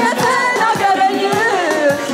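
A group of worship singers, men and women, singing a song together over a steady beat with hand claps.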